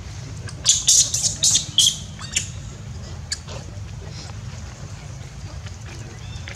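Long-tailed macaque squealing: a rapid run of shrill, high-pitched screeches about a second in, lasting about a second and a half, followed by a couple of fainter squeaks.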